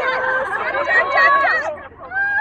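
Several people talking and calling out over one another in loud chatter, which drops away near the end.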